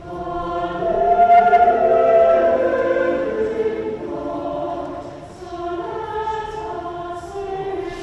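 Church choir of men and women singing in parts, with long held notes; the singing swells about a second in, eases back, and dips briefly a little past five seconds before going on.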